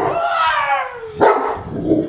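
Cane Corso barking at a remote-control toy truck: a sudden bark drawn out into a long cry falling in pitch, then a second, shorter bark about a second later.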